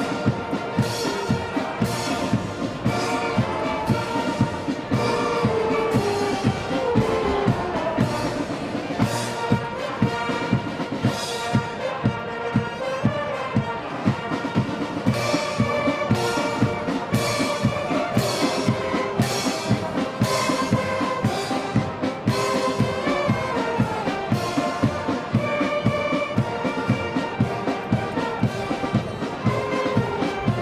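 Military brass band playing a quick march, brass melody over a steady marching drum beat.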